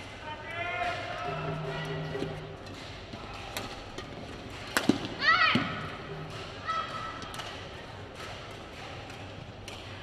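Badminton doubles rally in a hall: sharp racket-on-shuttlecock hits and footfalls, with players' calls early on. About five seconds in comes a loud hit, then a player's shout as the point is won.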